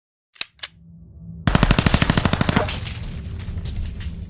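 Logo-intro sound effect: two sharp clicks, then a burst of rapid automatic gunfire, about a dozen shots a second for around a second, trailing off over a low, steady drone.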